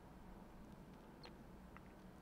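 Near silence: room tone, with two or three faint clicks about halfway through.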